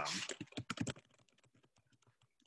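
Computer keyboard typing: a quick run of sharp key clicks in the first second, then faint scattered clicks.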